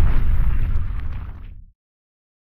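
Explosion-style boom sound effect of an animated logo reveal: a deep rumble that fades and then cuts off abruptly about three-quarters of the way through.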